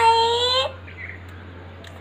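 A child's drawn-out, high-pitched cry that holds one long note and breaks off under a second in, over a steady low hum.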